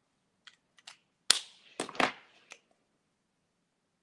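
Plastic Copic marker caps snapping off and on and markers tapped down on the desk while one alcohol marker is swapped for another: a run of about six sharp clicks in the first three seconds, the loudest about one and two seconds in.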